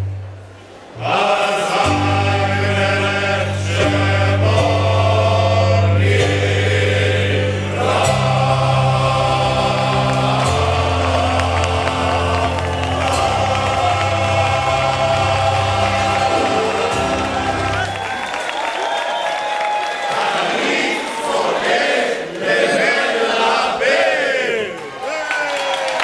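A large male choir sings long, held chords with deep bass notes, after a brief pause near the start. The singing ends about 18 seconds in and gives way to a livelier mix of voices from the crowd.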